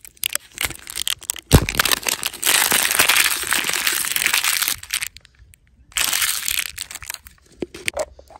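A clear plastic surprise-egg capsule being opened by hand: a sharp plastic snap about a second and a half in, then a long stretch of paper and plastic crinkling as its printed paper label is torn off and crumpled, and a second shorter burst of crinkling near the end.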